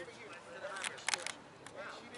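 Faint voices talking in the background, with a few sharp clicks about a second in.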